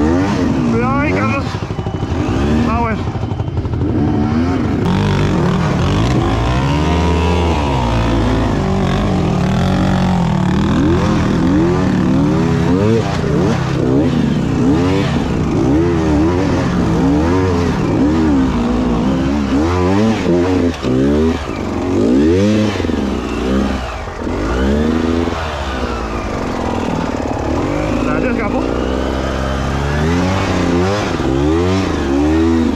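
Beta 200RR two-stroke enduro engine revving up and down over and over, the throttle opened and closed in quick bursts as the bike picks its way over tight, low-traction rocky ground.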